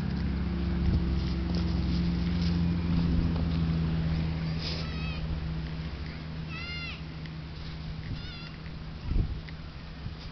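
A vehicle's engine drones steadily on the road and fades away over the first half. Then three short, high-pitched animal calls, each rising and falling in pitch, come about a second and a half apart, followed by a dull thump near the end.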